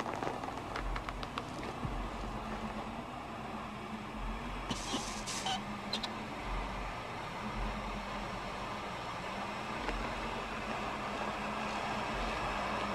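Low steady rumbling drone with irregular deep throbs, the tense background ambience of a film scene; a few faint clicks near the start and a short hiss about five seconds in.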